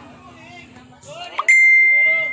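Voices, then a single loud bell-like ding about one and a half seconds in: one clear high tone that rings on and slowly fades.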